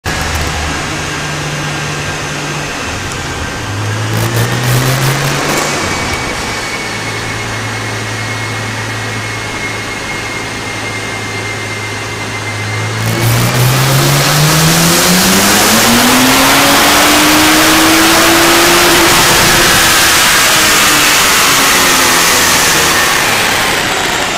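Nissan 350Z's twin-turbocharged 3.5-litre V6 on a chassis dyno: idling and briefly revved, then running steadily in gear with a thin steady whine. About thirteen seconds in it goes to full throttle, and the engine pitch climbs steadily for about six seconds with a loud rushing noise before the throttle comes off near the end.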